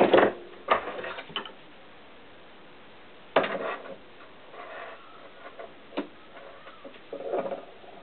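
Hand tools and small metal brake-line fittings clicking and knocking as they are handled at a workbench: a sharp knock at the start, a few clicks about a second in, another knock about three and a half seconds in and a click near six seconds.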